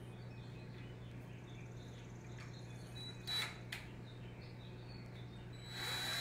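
Cordless drill run in two short bursts, one about halfway through and a longer one near the end, as it marks pilot holes through a pallet board for hanging hooks. A steady low hum sits underneath.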